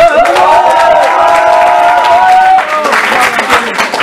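Audience applauding, with cheering voices held over the clapping for the first two and a half seconds, then clapping alone.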